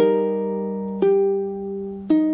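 Ukulele: an A-flat chord strummed once and left ringing, then about a second in a single plucked note over it. Both ring out and fade.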